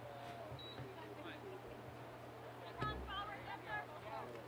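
Faint, distant voices calling out across an open soccer field, with a single low thump about three seconds in.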